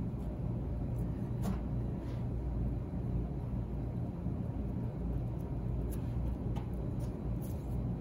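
Steady low rumble of workshop background noise, with a few faint soft taps as a brush dabs resin into fiberglass cloth.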